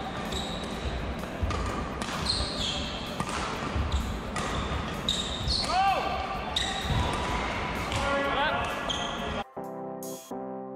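Live badminton drill on an indoor court: rackets striking shuttlecocks, footsteps, and sports shoes squeaking on the court floor as the player pushes off, in quick irregular succession. Just before the end it cuts off abruptly and music takes over.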